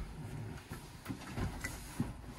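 Foam seat cushions being turned and pushed into place on a slatted wooden bed base: a few soft bumps and fabric rustles.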